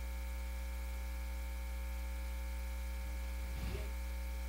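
Steady electrical mains hum: a low, unchanging buzz with a stack of fainter higher overtones.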